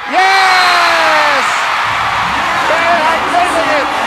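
A long, high-pitched yell lasting about a second and a half, sliding slightly down in pitch, over arena crowd cheering, then the cheering continues with shorter shouts: the celebration of the match-winning point.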